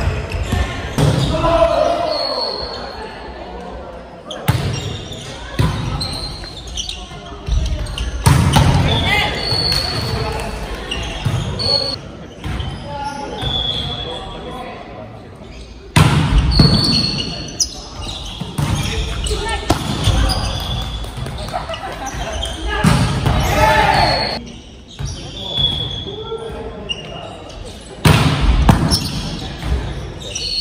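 Indoor volleyball rallies: the ball is struck and hits the floor with sharp slaps, and players shout calls, all echoing in a large gym. Short high squeaks, likely shoes on the court floor, come through between the hits.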